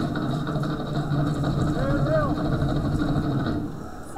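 Fast, driving Tahitian dance drumming with a sliding vocal call over it about two seconds in; the drumming drops away just before the end.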